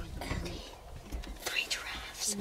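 Whispered, indistinct speech from people close to the microphone.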